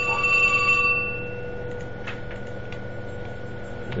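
A single bell-like chime: several high tones ring out together and fade away over about a second and a half, over a faint steady background whine.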